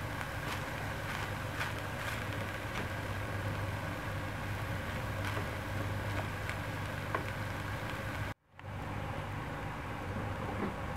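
A steady low hum under soft, scattered clicks of a wooden spoon stirring shredded chicken filling in a nonstick pan. The sound cuts out for a moment near the end.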